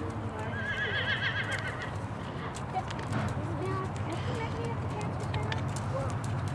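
A horse whinnying once, a wavering call lasting about a second and a half near the start.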